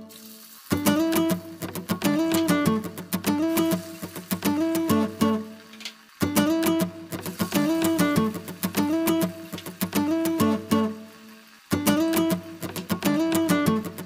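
Background acoustic guitar music: a short plucked phrase looping over and over. In three brief breaks in the music, at the start, about six seconds in and about eleven seconds in, a quieter sizzle of dhoka pieces deep-frying in hot oil comes through.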